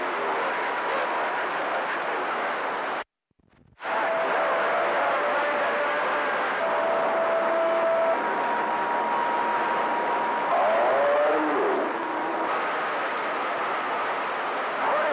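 CB radio receiver with its squelch open on channel 28, giving out loud steady static hiss with thin steady whistles from other carriers. The hiss cuts out for under a second about three seconds in, then comes back.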